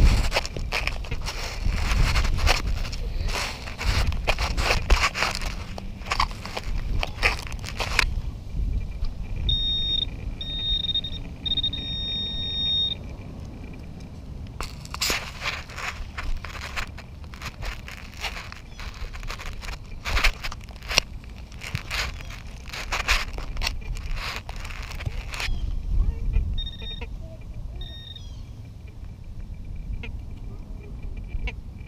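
A hand digger scraping and raking through wood-chip mulch, a dense run of crackling scrapes that stops for a few seconds in the middle. In that pause a metal-detecting pinpointer gives three short high beeps, and two fainter beeps come near the end.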